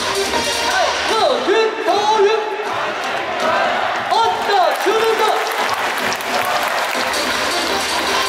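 Baseball stadium cheer song over the public-address system with crowd noise. About a second in, the beat drops out for several seconds while voices shout a rising-and-falling chant, and the music comes back in near the end.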